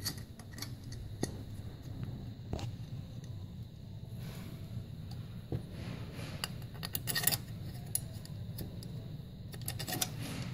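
Scattered light metal clicks and taps as a Holley carburetor's secondary fuel bowl and metering block are handled and fitted by hand, with a short cluster of clicks past the middle, over a steady low hum.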